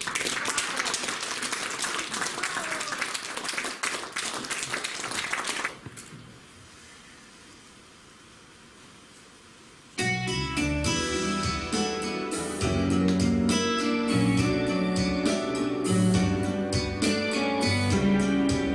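Audience applauding for about six seconds, then a few seconds of quiet room. About ten seconds in, guitar-led instrumental music starts: the introduction to a song.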